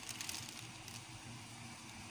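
Faint crinkling and rustling of thin plastic shopping bags being handled, with a few small crackles in the first half second.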